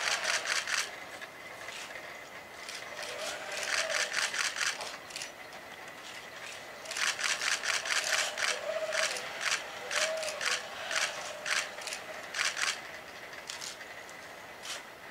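Kawada HRP-4 humanoid robot's joint motors whining faintly, rising and falling in short swells as its arms move, among repeated bursts of rapid clicking.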